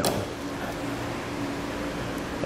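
Steady mechanical hum of room ventilation, with a faint steady tone and no distinct clicks.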